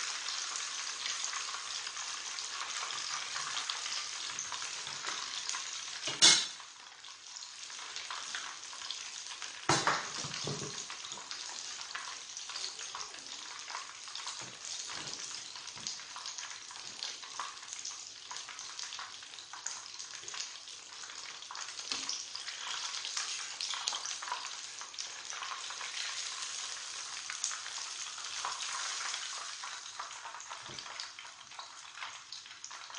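Breaded pork schnitzel shallow-frying in hot oil in a pan: a steady sizzle and crackle. Two sharp knocks, about six and ten seconds in, are the loudest sounds.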